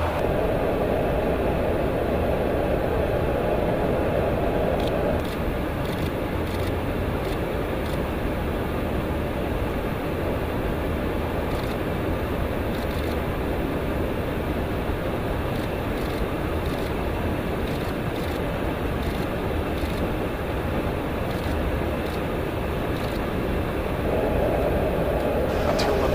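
Steady rush of airflow and engine noise inside a KC-135 tanker's boom operator pod in flight, with faint brief ticks scattered through.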